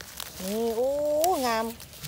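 Speech only: a woman's voice in one long drawn-out exclamation in Thai, rising slowly in pitch and then falling away.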